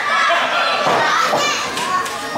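Voices from a small audience, children among them, shouting and calling out over one another.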